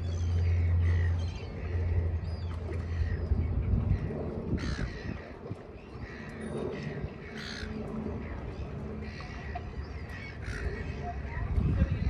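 Birds calling: a string of short calls every second or so. A steady low hum runs under them for the first three seconds.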